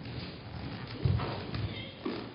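A person's brief low vocal sound, not words, about a second in.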